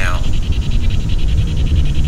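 Spirit box sweeping through radio stations, making a fast, even chatter of static pulses, about a dozen a second, over a low rumbling hiss.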